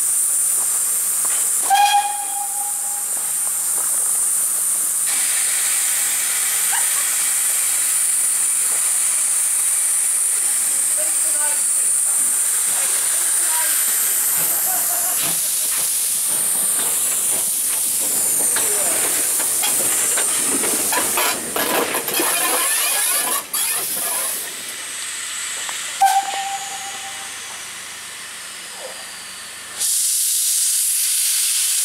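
Polish 'Slask' class 0-8-0T steam tank engine hissing steadily as it runs round its train, with two short whistle toots, one about two seconds in and one near the end. The sound grows busier as the engine passes close, about twenty seconds in.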